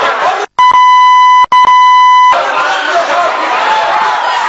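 A loud censor bleep: a steady high beep tone, cut sharply in, sounding twice back to back with a split-second gap for about a second and a half. A crowd's voices are heard before and after it.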